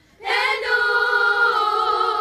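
Singing on the documentary's soundtrack: a soprano voice comes in a moment after a short silence and holds one long high note, dipping slightly in pitch about a second and a half in.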